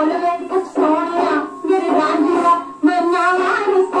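A 1962 Punjabi folk song playing from a record on a portable turntable: a woman singing over instrumental accompaniment.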